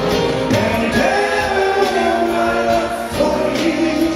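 A soul vocal group singing live with a full band: several voices hold long notes in harmony over drums, keyboards and bass, with a new phrase starting about three seconds in.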